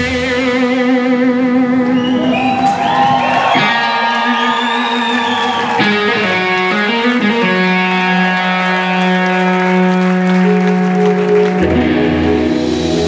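Distorted electric guitar played live, almost alone: long sustained notes with wide vibrato and string bends. Bass and drums come back in just before the end.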